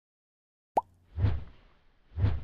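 Silence, then a short pop sound effect with a quick upward pitch glide about three-quarters of a second in, and a second, lower swishing hit about half a second later. These are the pop-up sound effects of an animated subscribe-button end card.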